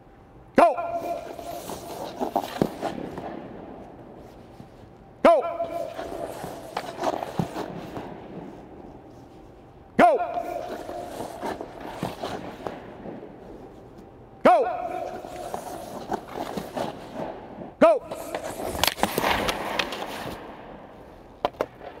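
Hockey goalie's skates and pads scraping across the ice in repeated lateral pushes in a goaltending drill. Five times, about every four to five seconds, a sharp sound sets off a burst of scraping that fades over a few seconds. Near the end the cue is a shouted "Go!".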